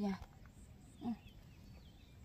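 A person's voice finishing a word, then quiet outdoor background with one short voiced sound about a second in.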